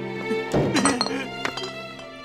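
A sudden crash with ringing clinks about half a second in, then two sharper clinks, over slow background music.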